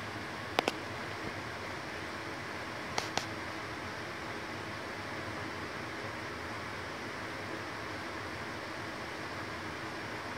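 Steady background hiss, with two quick pairs of sharp clicks, one about half a second in and one about three seconds in.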